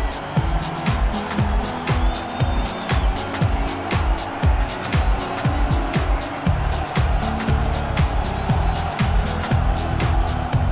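Electronic background music with a steady beat: deep kick drums that drop in pitch on each hit, with crisp hi-hat ticks over a sustained synth layer.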